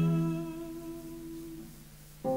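A women's choir humming a sustained low chord that fades away over about a second and a half, ending almost in silence.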